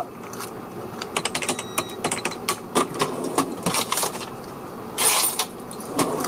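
Goods being handled at a shop counter: a run of light clicks and rustles, with a louder rustle about five seconds in.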